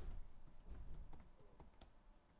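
Typing on a computer keyboard: a quick, irregular run of faint key clicks that thins out near the end.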